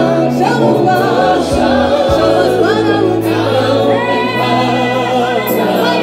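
A gospel worship team singing together into microphones, a woman's lead voice over the group, amplified through a PA. Held low accompaniment notes sit under the voices, changing pitch a few times.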